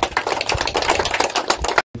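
Audience applauding, a dense patter of many hands clapping that cuts off suddenly near the end.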